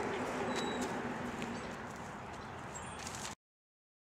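Outdoor background noise: a steady hiss with a few faint short high chirps and soft clicks, cut off abruptly to silence a little over three seconds in.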